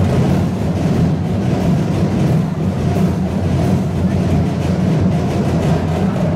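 Sinulog festival drum ensemble playing a dense, continuous rolling beat on deep drums, loud and without a break.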